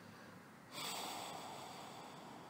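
A person's breath through the nose close to the microphone, starting sharply about three quarters of a second in and fading over about a second.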